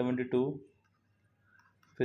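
A man's voice speaking Hindi for about half a second at the start, followed by a pause with a few faint clicks.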